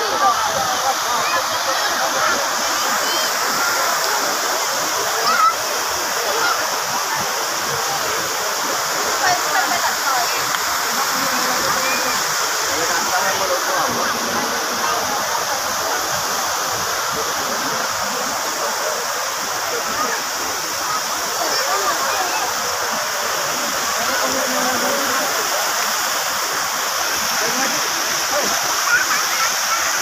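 Steady rush and splash of tall fountain jets falling into a pool, with the chatter of a crowd of voices throughout.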